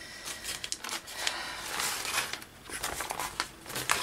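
A sheet of painted drop paper rustling as it is lifted and peeled up off a plastic craft mat, in several short bursts.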